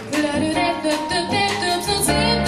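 Live jazz: a woman singing wordless melodic lines over acoustic grand piano, plucked double bass and drum kit.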